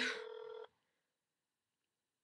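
Telephone ringback tone heard through a phone's speaker, a steady tone meaning the call is still ringing unanswered; it cuts off just over half a second in.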